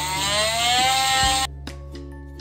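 Cordless oscillating multi-tool sanding the rust off the inside of a steel wheel rim: a harsh rasp over a whine that rises in pitch, cutting off suddenly about a second and a half in.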